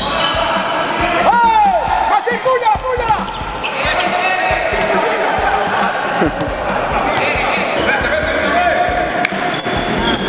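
Live basketball game sound in a large gym: a ball dribbled on the court, sneakers squeaking several times in the first few seconds, and players' voices calling out.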